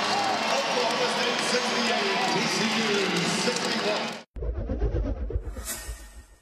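Arena crowd cheering and shouting at the final buzzer of a home win, cut off abruptly about four seconds in. Then a short logo sting with a deep boom and a brief whoosh near the end, fading out.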